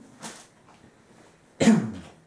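A man coughs once, loudly, about a second and a half in.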